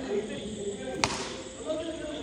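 A single sharp knock about a second in, over faint background voices of players.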